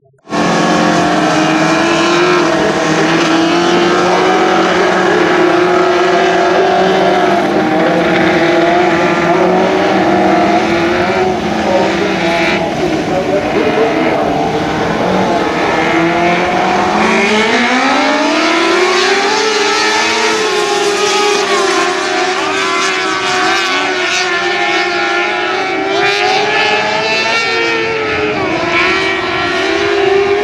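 Several 600cc micro sprint cars running together at low, steady revs in formation. A little past halfway their engines rise in pitch and stay higher as the field picks up speed.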